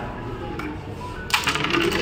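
A carrom striker is flicked into the carrom men about a second and a half in: one sharp crack, then a quick run of clicks as the wooden pieces knock together and skid across the board.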